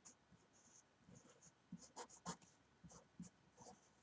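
Faint scratching of a felt-tip marker writing on paper in short strokes, a little more distinct about two seconds in.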